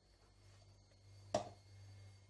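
A single short knock as a plastic measuring cup is set down on a countertop, over a faint low steady hum.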